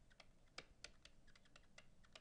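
Faint, irregular clicks and taps of a stylus writing on a tablet screen, several a second.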